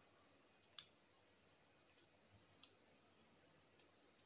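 Near silence: room tone with a few faint, sharp clicks, the two clearest about a second in and about two and a half seconds in.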